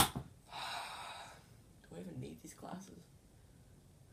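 A sharp click right at the start, then a young man's gasp, followed by two short murmured vocal sounds.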